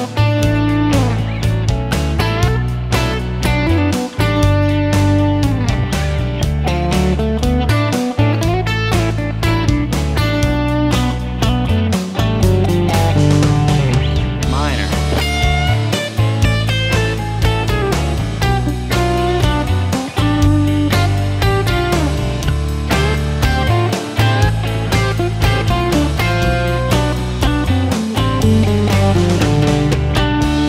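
Telecaster electric guitar improvising a lead line in D major pentatonic over a jam track with drums. About halfway, after a drum fill, the drums get louder and ride-heavy and the guitar switches to D minor pentatonic for a more rocking sound.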